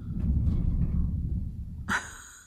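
Snow sliding off the house roof in a mass, heard from indoors: a huge noise, a deep rumble lasting nearly two seconds that fades out near the end.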